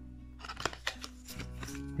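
A handful of light, sharp clicks and slides of stiff game cards being handled and turned over in a hand-held deck, over quiet steady background music.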